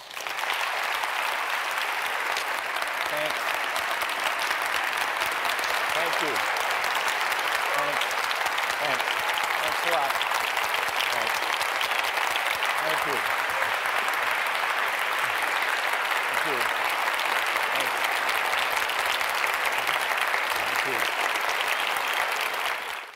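Large audience applauding steadily and at length, with faint voices calling out among the clapping.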